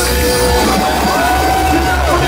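Live reggae-dancehall band playing loud through a club PA, with a heavy bass line and vocals over it.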